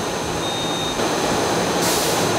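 Steady running noise of a diaper-recycling line's machinery, a motor-driven inclined conveyor feeding bagged used diapers into a hopper, with a thin high tone that comes and goes and a brief hiss near the end.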